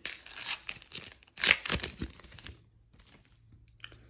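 Foil trading-card pack wrapper being torn open and crinkled, a run of crackling rips over about two and a half seconds, the loudest tear about one and a half seconds in.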